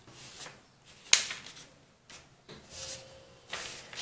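Brown kraft-paper sewing pattern being handled and folded on a wooden table: several short rustles and crinkles of the paper, with one sharp, sudden sound about a second in, the loudest moment.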